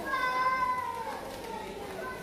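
A young child's long, high-pitched vocal call, held for about a second and then falling in pitch, like a drawn-out squeal or meow-like cry.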